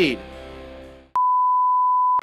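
The end of the music fades out, then a steady, single-pitched electronic bleep tone starts abruptly about a second in and holds without change.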